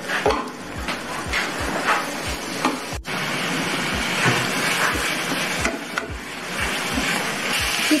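Blended spice paste sizzling as it fries in oil in a non-stick wok, stirred with a wooden spatula.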